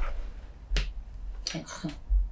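Two sharp clicks, one at the start and one just under a second in, each with a low thump.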